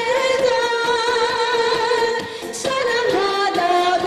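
A woman singing a Korean popular song into a handheld microphone, holding long notes with vibrato; the first long note ends about two seconds in, and after a short break she goes on to new notes.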